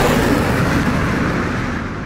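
A rumbling, hissing noise dying away steadily and fading out, its high end going first.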